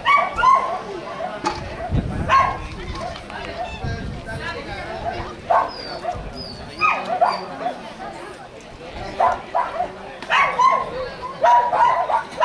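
A dog barking in short, repeated barks a second or two apart, mixed with a person calling out.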